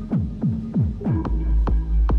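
Electronic club music over a club sound system: a run of quick falling pitch drops, about three a second, then deep bass and a beat come back in about a second in.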